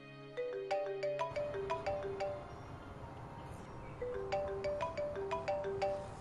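Smartphone ringtone for an incoming call: a melody of short, bright notes that repeats over and over. Soft background music fades out under it in the first second.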